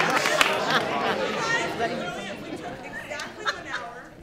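Audience chatter: many people talking at once in a large room, with a few last claps of applause early on. The hubbub dies down over the few seconds.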